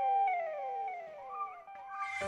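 Opening of a song's instrumental intro: one held tone with several overlapping tones sliding down in pitch, like echoes.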